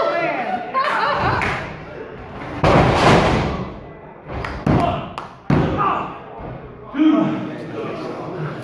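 A wrestler slammed down onto the canvas of a wrestling ring, a loud thud about three seconds in, followed by a few shorter, sharper impacts on the ring.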